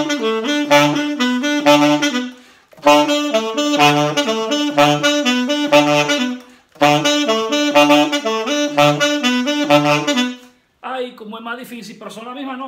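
Alto saxophone playing three short merengue típico phrases of quick, detached repeated notes, punctuated by a regularly recurring low note at the bottom of the horn's range (the low B). A man's voice follows near the end.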